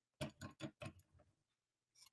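Four or five quick, faint clicks in the first second, from hands working at a stuck bottle cap.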